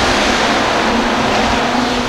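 A pack of hobby stock race cars running flat out together: a loud, steady engine roar.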